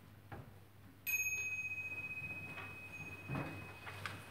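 A small bell struck once about a second in, ringing with one clear high tone that fades slowly over the next three seconds. A low knock sounds near the end.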